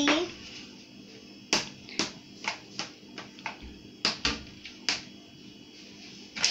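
A series of sharp, irregular clicks, about eight of them, starting about a second and a half in and spaced roughly half a second apart.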